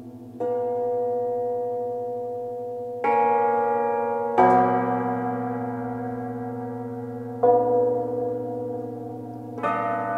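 Concert cimbalom struck with hammers in slow, widely spaced chords, about five strokes, each left to ring on and fade into the next.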